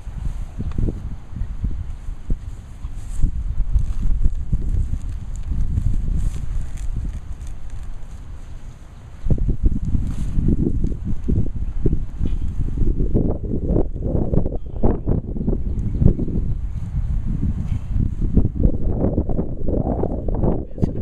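Digging a plug out of grassy turf with a hand digger and bare hands: irregular scraping, tearing roots and crumbling dirt close to the microphone, with wind rumbling on the mic. It eases off briefly just before the middle, then picks up again, louder.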